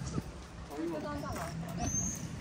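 Quiet talk between people, with a low steady background rumble and a short high-pitched chirp near the end.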